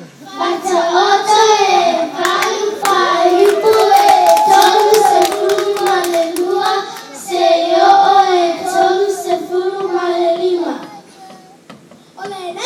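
A group of young children singing a song together in unison into microphones, with hand claps over the middle few seconds. The singing stops about eleven seconds in.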